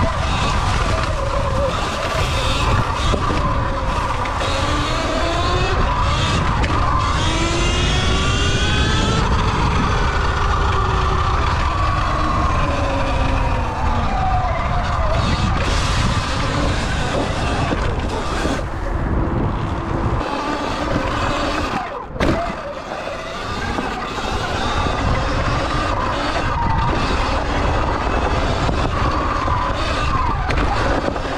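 Sur Ron electric dirt bike's motor whining as it is ridden, the whine rising and falling in pitch with the throttle, over a steady rumble of wind on the microphone. A single sharp knock about two-thirds of the way through.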